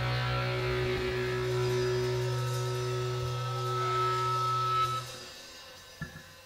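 A grunge rock band playing live, with distorted electric guitars and bass holding one sustained chord. A high steady tone swells near the end, then the band stops about five seconds in, leaving only faint hall noise.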